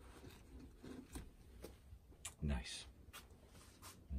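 Faint handling noise: small clicks and rustling as a saildrive cone-clutch cup and cone are handled on a paper towel, with one brief, louder low sound about two and a half seconds in.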